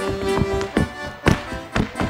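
Chula dancer's boots striking and tapping a wooden stage floor in quick footwork, several sharp heel-and-toe strikes about half a second apart, over accordion music playing the dance tune.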